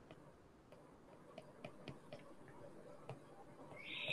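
Faint, irregular ticks of a stylus tip tapping on a tablet's glass screen during handwriting, with a brief hiss near the end.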